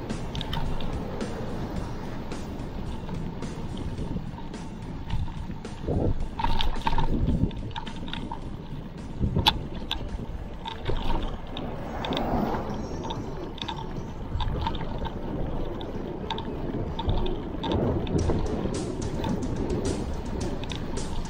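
Wind rushing over a bike-mounted camera's microphone together with tyre and road rumble while a mountain bike rides along a paved road, with light rattles and clicks and a few louder bumps.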